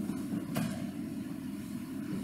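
A steady low hum of room noise picked up by the pulpit microphone, with one brief click about half a second in.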